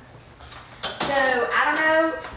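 A woman talking for the second half, the loudest sound here. Before it there is a quieter second with a brief knock, like a pot set down on a stovetop.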